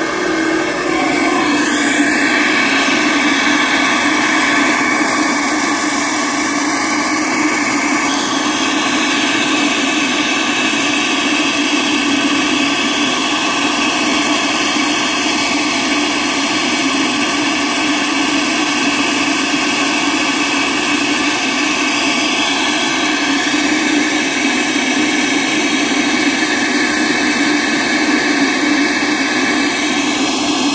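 SuperFlow flow bench running steadily, its motors drawing air through a cylinder head's intake port at about 27 inches of water test pressure, flowing about 212 CFM. A loud, even rush of air with steady tones held through it.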